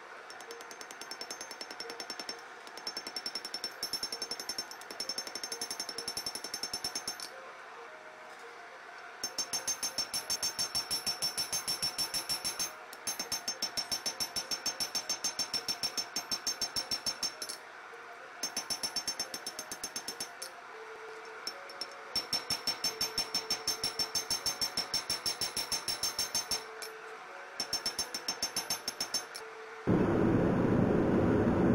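Hand-forging hammer blows on a red-hot spring-steel knife blank on an anvil, the anvil ringing high with each blow. The blows come in very fast runs of several seconds each, broken by short pauses, about six runs in all.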